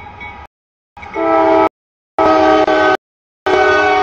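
Locomotive air horn sounding for a grade crossing as a freight train arrives. It comes as a fainter blast, then three loud chord blasts of under a second each, with abrupt silences between.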